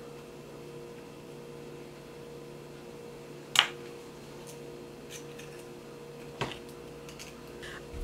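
Quiet room with a steady low electrical hum. There are small handling sounds from an egg being separated by hand: a sharp click about three and a half seconds in and a softer knock about six and a half seconds in.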